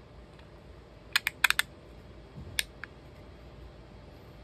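Sharp plastic clicks and taps as a small digital hygrometer is pushed and seated into a 3D-printed plastic case: a quick cluster of about five clicks a little after one second in, then two more soon after.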